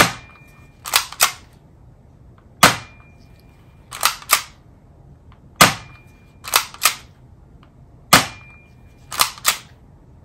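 Tokyo Marui Glock 17 spring airsoft pistol fired four times, a sharp pop about every two and a half seconds, each followed by a brief faint high beep. Between the shots the slide is racked by hand to cock it, two quicker clicks a second after each shot.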